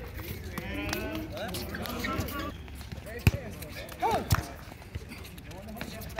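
Players shouting and calling out during a pickup soccer game, with a sharp thud of the ball being kicked about three seconds in and another about a second later.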